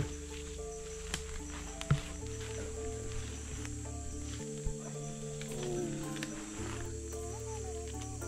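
Background music with held low notes, over a steady, thin high-pitched chorus of night insects.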